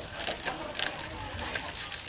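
Shimano 105 rear derailleur shifting the chain up a sprocket on a 10-speed cassette while the drivetrain turns: the chain runs steadily with a few sharp clicks as it moves across. It is a smooth shift.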